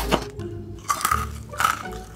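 Background music, with a sharp double crack at the start as a knife cuts through a chocolate-coated cinder toffee (honeycomb) bar. Two more short crunchy noises follow, about a second in and near the end.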